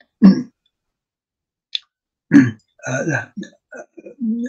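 A man's short, low, throaty vocal sound, then a pause with one faint click, then a few seconds of halting voice sounds.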